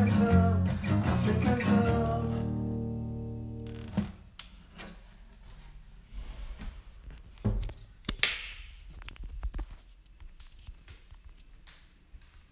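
Guitar strumming chords that stops about two seconds in, the last chord ringing on and fading out. After it, scattered knocks and bumps, the loudest about four seconds in and again near eight seconds.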